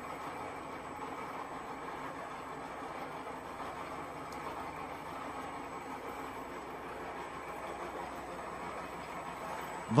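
Steady running noise of a radial tyre shredding machine as its toothed cutter wheel turns and tyre pieces are fed in: an even mechanical drone with no distinct knocks.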